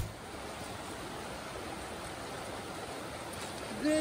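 Steady rush of flowing water.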